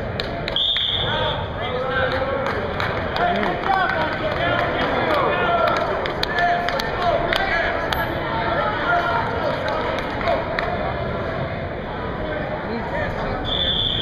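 Wrestling referee's whistle blown in two short steady blasts, one about half a second in and one near the end, stopping and restarting the bout. Spectators and coaches talk over the gym's echo between them.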